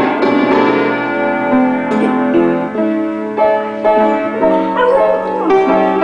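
Upright piano keys plunked in random clusters by small hands, with a beagle howling along in wavering, pitch-bending cries in the second half.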